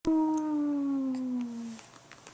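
Infant cooing: one long vowel sound of about a second and a half, its pitch falling slowly.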